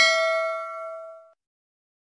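A single metallic bell 'ding' sound effect, the notification-bell chime of a subscribe animation. It is struck once and rings out for about a second and a half before dying away.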